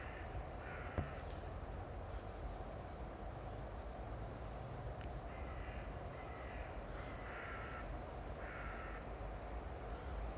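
A crow cawing, a series of short harsh caws, one about a second in and several more in the second half, spaced about a second apart. A single sharp click about a second in, over a steady low rumble.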